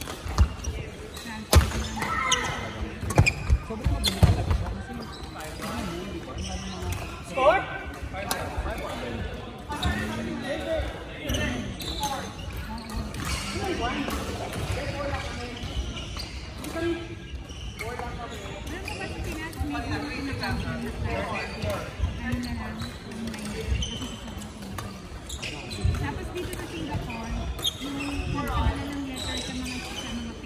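Badminton rally: sharp racket hits on the shuttlecock and footfalls on a wooden court in the first several seconds, ringing in a large hall. Voices talk for most of the rest.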